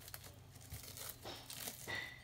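Faint crinkling and rustling of the plastic bag around a glycerin soap bar as it is opened and handled.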